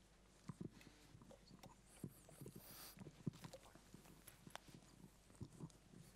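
Near silence in a lecture hall, broken by scattered faint clicks and knocks and a brief faint rustle about two to three seconds in.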